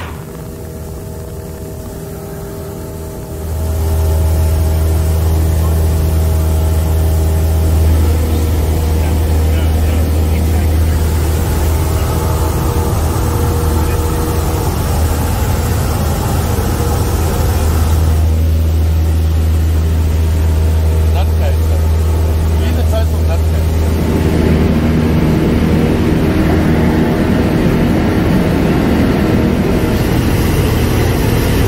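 Cessna 170B's six-cylinder Continental engine and propeller droning steadily in flight, heard from inside the cabin; the drone gets louder a few seconds in.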